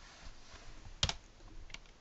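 Keystrokes on a computer keyboard: a sharp click about a second in and a fainter one near the end. Between them, a mistyped letter at the end of the title text is deleted.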